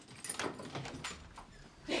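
A door being unlocked and opened: a few short clicks and knocks, the loudest near the end.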